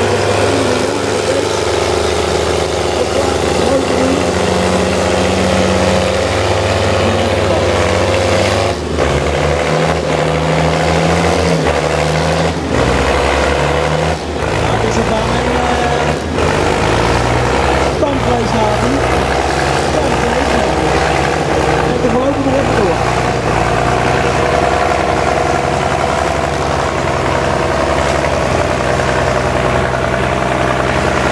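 Nuffield Universal tractor's engine running loud and continuously under load while pulling the sled. Its pitch shifts up and down several times, with a few brief dips in loudness.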